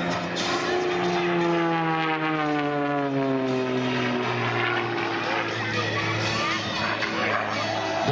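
Extra 300 aerobatic plane's 300 hp Lycoming flat-six and propeller in flight. The drone holds for about a second, then falls steadily in pitch over the next six seconds. The announcer puts this change in tone down to the constant-speed propeller changing pitch automatically.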